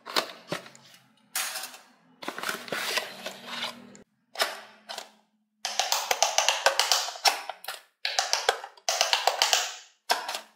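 Cardboard box and plastic being handled for the first few seconds. From about six seconds in, an electronic quick-push pop-it game plays its electronic sounds in several short bursts while its silicone bubbles are pressed rapidly.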